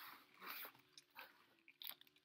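Faint crinkling and rustling of packaging in a few short bursts as a book is handled and lifted out of a box.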